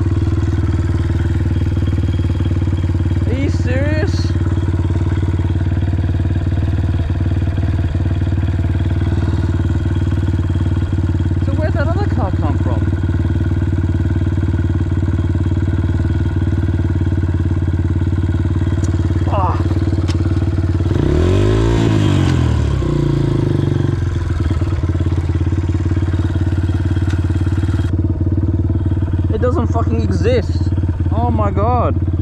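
Honda CRF150F's single-cylinder four-stroke engine idling steadily, with one brief rev that rises and falls back about two-thirds of the way through.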